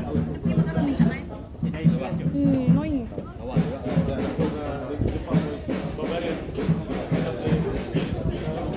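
Several people talking over one another close by, with music playing in the background.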